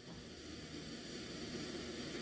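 Faint steady hiss with a low hum, the background noise of the recording microphone heard between spoken phrases.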